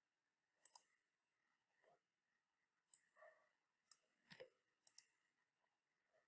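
Faint computer mouse clicks over near silence, about eight of them spread through the few seconds, several in quick pairs like double-clicks.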